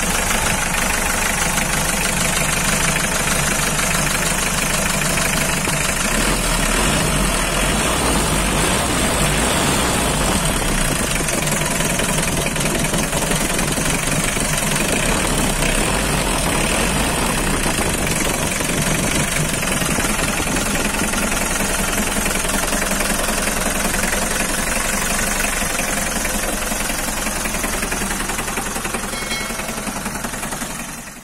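Mitsubishi L300's 2.5-litre diesel engine idling steadily, with a diesel knock, heard close up at the valve cover with the oil filler cap off. This is shown as a blow-by check: the owner says the engine still runs smoothly but some smoke is already showing, though it is still holding up.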